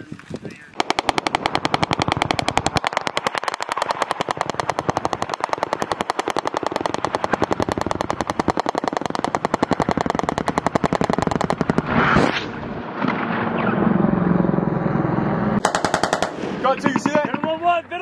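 Machine gun firing one long sustained automatic burst of rapid, evenly spaced shots lasting about eleven seconds. A single louder report follows, then a low rumble, then a second short burst near the end.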